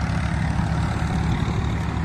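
Tractor diesel engine running steadily while driving a thresher, a constant low hum with machine noise over it.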